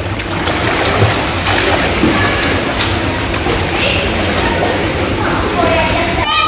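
Water splashing and sloshing as a small child swims in a pool, over a steady wash of pool-hall water noise with faint voices in the background.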